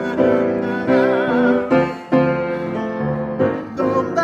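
Grand piano playing a swung jazz arrangement, with chords struck one after another.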